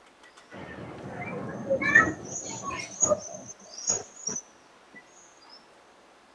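Sheets of paper being handled and turned over close to a table microphone: rustling and crackling for about four seconds, with a few sharp crinkles and clicks, then dying away.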